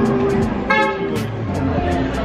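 A car horn gives one short toot about a second in, over steady street traffic noise.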